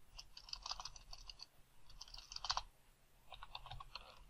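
Faint computer keyboard typing in three short runs of keystrokes, entering a name into a text field.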